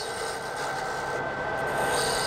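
Wood lathe running while a turning tool cuts a spinning bird's-eye maple pen blank: a steady shaving, rubbing noise from the tool on the wood, growing slightly louder toward the end.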